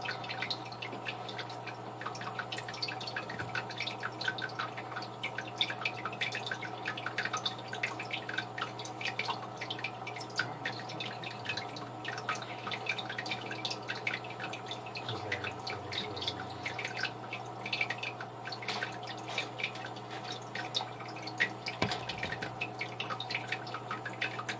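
Aquarium filter outflow pouring into shallow tank water, a steady trickle of many small splashes and drips over a constant low motor hum.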